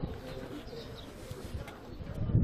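A bird cooing in the manner of a pigeon or dove, with a few short high chirps about a second in.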